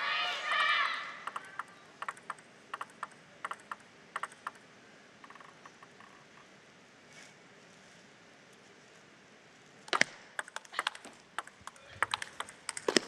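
A table tennis ball bounced a few times with light, sharp clicks while a player readies her serve. After a quiet pause, a rally begins about ten seconds in: a quick run of sharper clicks of the plastic ball on bats and table.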